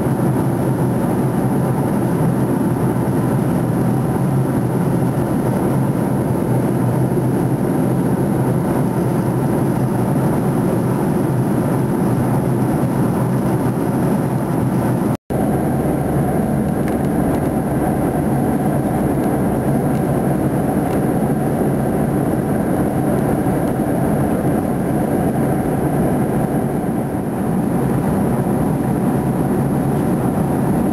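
Steady cabin noise of a jet airliner in flight: engines and air rushing past the fuselage, heard from a window seat. It breaks off for an instant about halfway through and resumes unchanged.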